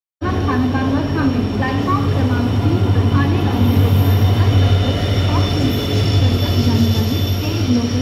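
Indian Railways diesel locomotive passing close by, its engine giving a loud, steady low drone, with its train of coaches following.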